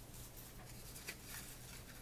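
Faint rustling and soft handling noises from hands moving a skein of sock yarn, over a low steady room hum.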